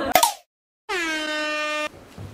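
A short burst of voice is cut off, followed by a moment of dead silence. Then comes an air-horn sound effect lasting about a second: a brassy blast that settles onto one steady pitch and stops abruptly.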